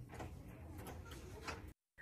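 Faint, scattered clicks and small knocks of a key working in a wooden door's lock. The sound cuts off abruptly shortly before the end.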